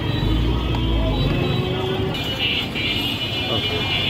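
Busy street traffic: motor vehicle engines running close by, with a low engine rumble through the first second or so. Voices and music sound in the background.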